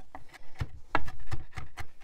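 Chef's knife chopping basil on a wooden cutting board: a run of quick, uneven knocks of the blade on the board, about four a second, the loudest about a second in.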